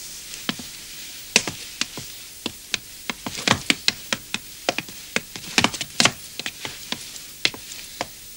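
Footsteps of several people walking on a wooden stage: an irregular run of sharp clicks and knocks, busiest about three to six seconds in.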